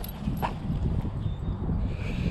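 Low, uneven rumble of wind and rubbing on a body-worn GoPro's microphone as the wearer bends and moves, with one brief sharp sound about half a second in.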